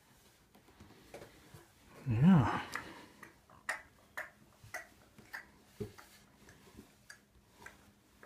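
A short voiced cry or exclamation, pitch rising then falling, about two seconds in and the loudest sound. After it come a series of light taps about twice a second: a baby's hands and knees patting the wooden stair treads and mats as he crawls up the stairs.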